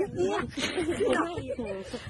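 Speech only: softer voices talking, quieter than the louder talk on either side.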